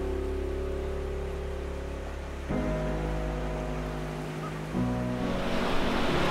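Background piano music holding soft sustained chords that change about two and a half and five seconds in. Sea surf washing on the shore grows under it near the end.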